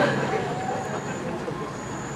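Faint voices over a steady outdoor background noise, without clear speech.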